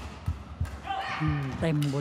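A steady low thumping beat, about three thumps a second, during a line-call review. About a second in, a woman commentator's voice comes in over it.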